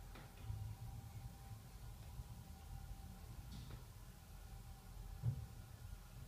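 Quiet elevator cab: a low steady rumble with a faint steady hum tone and a few soft clicks.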